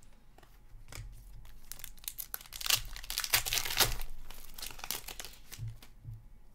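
Hockey trading cards being handled and slid against each other, a dense crinkling rustle that builds and is loudest in the middle, with a few soft low thuds.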